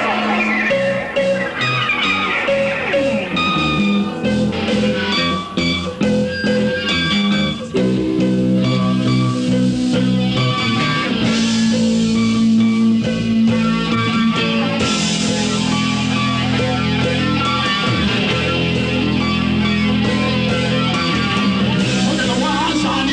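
Live rock band playing an instrumental passage on electric guitars, bass guitar and drums. It goes in choppy stop-start hits for about the first eight seconds, then settles into fuller, steady playing, with cymbals brightening the sound from about halfway.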